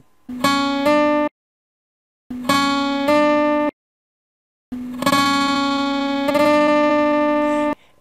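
Acoustic guitar's B string plucked at the second fret and hammered on to the third, so the note steps up a half step without being plucked again. The demonstration sounds three times with dead silence between, the last ringing about three seconds.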